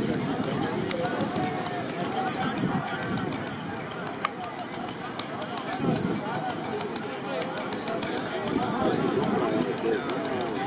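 Spectator crowd at a bull race: many men's voices talking and shouting over one another, with a single sharp click a little after four seconds in.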